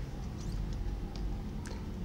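Quiet room hum with a few faint, light ticks as paper flashcards are handled and one card is moved from the front of the stack.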